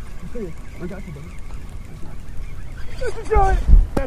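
Men's excited yells and whoops, short and scattered at first and getting louder and more drawn out near the end, over a low wind rumble on the microphone with a couple of heavy bumps just before the end.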